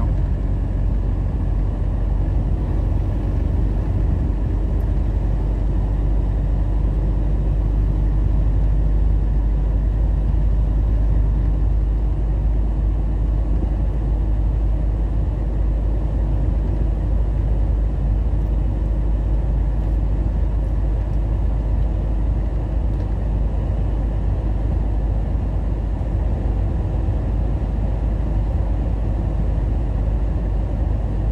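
Steady low drone of a truck's engine and tyre noise, heard inside the cab while cruising at highway speed.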